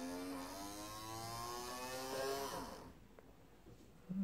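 Braun Silk-épil 7 epilator's small DC motor, bared on its circuit board, running with a steady whine for about three seconds. Its pitch drops as it winds down near the end. It runs because the battery-management IC has just been reset.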